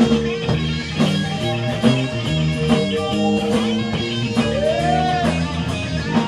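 Rock band playing an instrumental passage: guitar over bass and a steady drum beat, with one guitar note bending up and back down about three-quarters of the way through.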